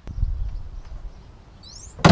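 A click, then a low rumble that fades over about half a second, with a few short rising bird chirps near the end.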